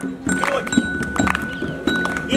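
Live music in a pause between sung lines: scattered percussive knocks over a thin, steady high held note and a low drone.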